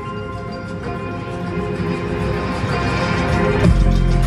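Electronic music track being played back from the DAW: held synth chords under a rising filter sweep that builds in loudness, then a deep bass comes in just before the end.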